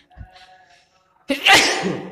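A single sudden, loud burst of breath noise from a person, about a second and a quarter in, fading within about half a second.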